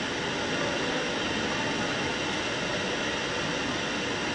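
A steady, even rushing noise with no distinct events, like the background hiss of a hall's sound system or microphone.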